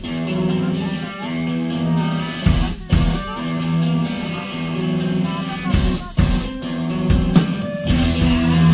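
Live rock band playing: electric guitars and bass ring out a slow, repeating riff, punctuated by a few loud drum hits.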